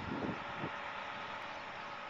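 Steady street noise with traffic running by, a low rumble that is strongest in the first second.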